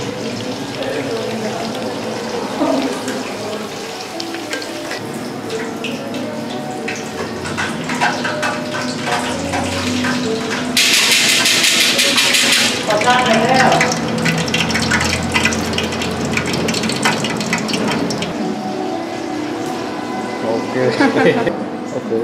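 Golden bag dumplings (thung thong) deep-frying in a wok of hot oil, a steady sizzle. A louder, sharper hiss lasts about two seconds around the middle.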